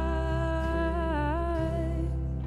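Worship song: a woman's voice holds one long sung note that dips briefly in pitch a little past halfway and then settles again. Steady low accompaniment plays underneath.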